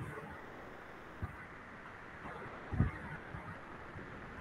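Steady background hiss with a faint tap a little over a second in and a short low thump just before three seconds in.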